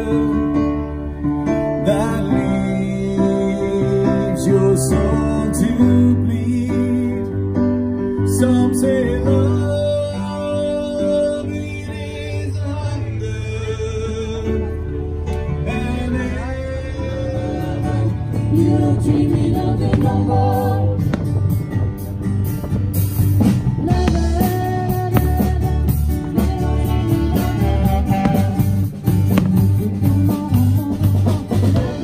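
Music: a slow ballad with guitar and singing, its notes long and held; drums come in about halfway through and keep a beat to the end.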